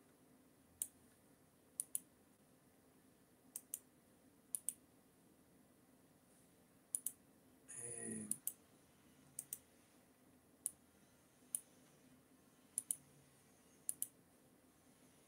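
Faint, sharp clicks at a computer, mostly in close pairs, coming every second or so. A brief murmur of a man's voice a little past the middle.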